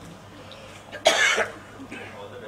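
A person coughs once, a short loud burst about a second in, over a low murmur from the room.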